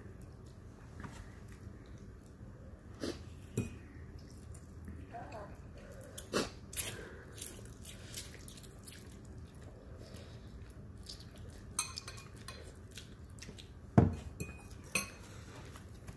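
Metal forks clinking and scraping against ceramic bowls while two people eat noodles: scattered short, sharp clinks, the loudest about two seconds before the end.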